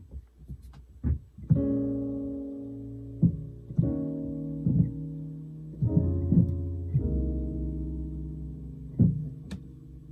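Electric keyboard playing a piano sound: four notes, C-sharp, F-sharp, F and E-flat, struck one after another about 1.5, 4, 6 and 7 seconds in, each held and left to ring down. Short knocks fall between the notes.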